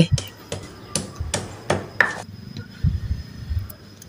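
Stone pestle pounding shallots, garlic and candlenuts in a volcanic-stone mortar (cobek and ulekan), crushing them into a spice paste. Sharp knocks come about three a second for the first two seconds, then softer, duller thuds as the crushed mash is ground.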